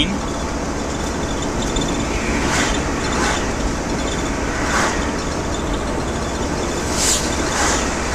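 Steady engine and road noise inside a moving VW T4 camper van, with several oncoming cars going by in brief whooshes.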